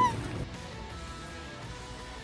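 A woman's short, high squeal, rising then falling, at the very start, then faint background music over a low, steady hum.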